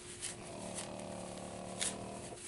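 Dry tulip poplar bark fibers rustling and tearing as they are pulled apart by hand, with a sharper tear near the end. A faint steady hum runs underneath.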